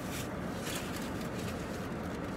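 A paper sandwich wrapper rustling and crinkling in short bursts as it is handled, over the steady low hum of a car's interior.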